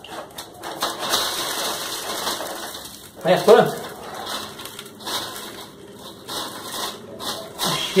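Dry mealworm culture substrate pouring out of a styrofoam box onto a mesh sieve and being stirred by hand: a dry rustling with many small clicks from the grains and pieces.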